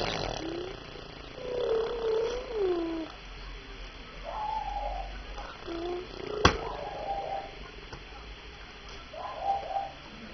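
A baby cooing and babbling in short, pitch-gliding sounds, several times over. A single sharp click sounds a little past the middle.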